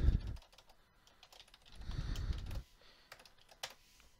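Computer keyboard being typed on, irregular key clicks, with a duller, lower rumble for about a second in the middle.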